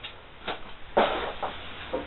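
Dishes being handled: a light click about half a second in, then a louder knock about a second in that fades out, and a few smaller handling sounds.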